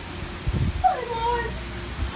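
A cat meows once about a second in, a short call that falls in pitch.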